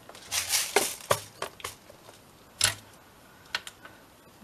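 A handful of sharp plastic-and-metal clicks and knocks, the loudest a little past the middle: a clear plastic compartment box of metal eyelets being shut and set aside, and metal eyelet-setting pliers being picked up.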